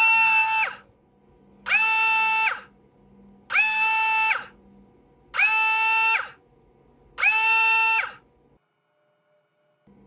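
JK Hawk 7 slot car motor on a motor analyser, run up five times in an acceleration test. Each run is a high whine that climbs quickly to a steady pitch, holds for under a second, then cuts off, about two seconds apart. The motor reaches 50,000 rpm with its brushes freshly run in.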